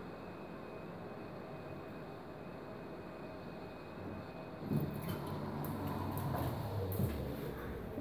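Low steady hallway hum while waiting. About halfway through, an elevator arrives and its doors slide open with a low rumble, followed by scattered knocks and rustles as the person steps in.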